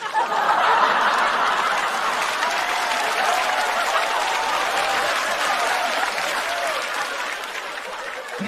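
Theatre audience applauding, with some laughter mixed in. It is loudest in the first couple of seconds and slowly dies away.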